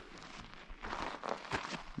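Faint scuffing and crunching of feet shifting on sandy ground, growing a little louder after about half a second, with a few sharper scrapes near the end.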